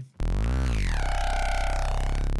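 Synthesized FM bass patch in Kilohearts Phase Plant sounding one held low note through its nonlinear filter set to the Fuzzy mode. The note starts about a fifth of a second in with a sweep as the envelope opens the filter, then settles into a loud, dense, distorted steady tone.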